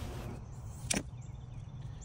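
A single sharp click about a second in as the thin tip of a D2 steel pocket knife is jabbed into a weathered wooden stump, a tip test that leaves the tip deformed.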